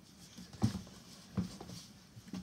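A child's footsteps running across a bedroom floor: a few soft knocks and two heavier thuds, about half a second and a second and a half in.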